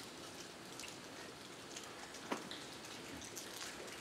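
Quiet sanctuary with faint crackles and one sharp click a little past halfway, from small plastic communion cups being handled and drunk from.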